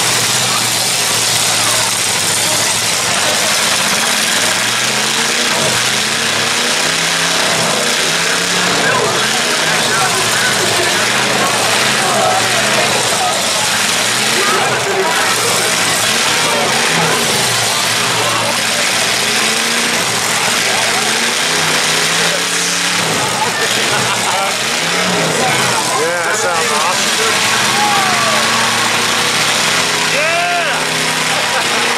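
Several unmuffled demolition-derby car engines running and revving in a dirt arena, with a few knocks of collisions and a rising and falling rev near the end, over crowd chatter in the grandstand.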